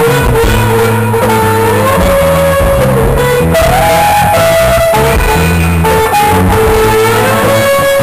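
Live rock band: a Les Paul-style electric guitar plays a lead line of held notes with slow bends over bass guitar.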